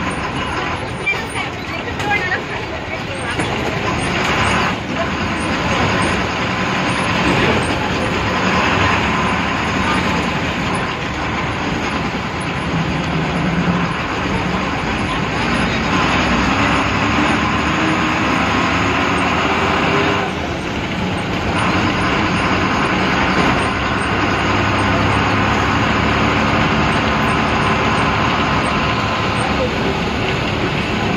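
Diesel engine of an MSRTC Ashok Leyland ordinary bus pulling away and driving through town, heard from inside the cabin, with the bodywork clattering. The engine note climbs in pitch in the middle and eases off briefly about two-thirds of the way in.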